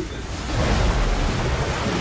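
Sound effect of rushing, splashing water laid over a video transition: a dense surging noise that swells up about half a second in and stays loud.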